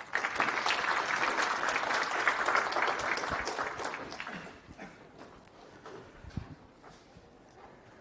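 Audience applauding, the clapping fading away about four to five seconds in.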